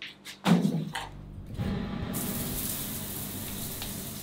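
A few clicks and a short thump, then an overhead rain shower head starts spraying water about two seconds in, a steady hiss of falling water.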